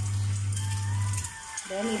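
An egg frying in oil in a small pan, a faint sizzle with light crackles, under a steady low hum that cuts out a little past halfway. A voice speaks near the end.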